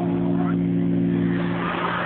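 Live band holding a sustained chord through the arena PA, several steady notes that end about one and a half seconds in, over crowd noise, picked up by a low-quality camera microphone.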